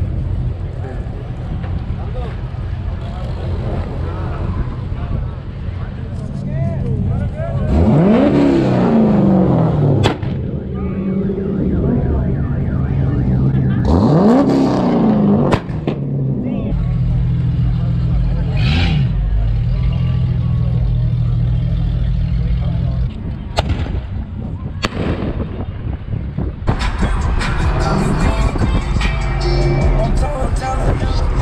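A car engine revved hard twice, each rev climbing for about two seconds and then cutting off sharply, followed by a shorter blip and a steady idle, with a few sharp cracks.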